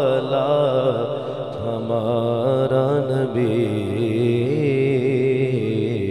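A man singing a naat (devotional song in praise of the Prophet) in long, drawn-out wavering notes without clear words. No instrument or percussion is heard.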